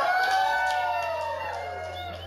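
A voice holding one long note that swoops up and then slides slowly down. A low steady hum comes in beneath it partway through.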